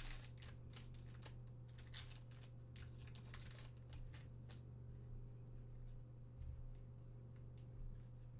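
Faint crinkling and crackling of a foil trading-card pack wrapper torn open and handled, busiest in the first half and sparser later, as the cards are slid out. A steady low hum runs underneath.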